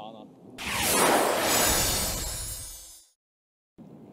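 Broadcast transition sound effect, a whoosh-like swell that comes in suddenly about half a second in and fades away over about two seconds. It cuts to a moment of dead silence before the course ambience returns.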